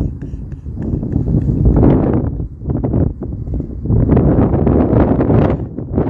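Wind gusting across a phone microphone, a low rumbling buffet that swells up twice.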